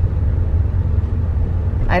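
Steady low rumble inside a car's cabin while it drives slowly along a town street.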